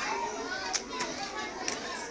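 Children's voices and chatter in a hall, with three sharp clicks or taps in the middle.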